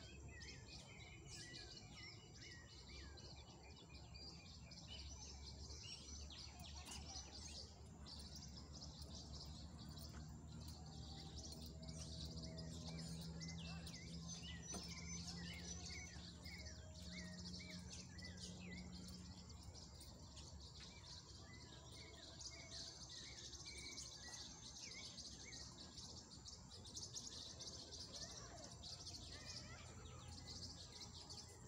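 Many small birds chirping and calling over a steady high-pitched insect drone, with a faint low hum in the middle.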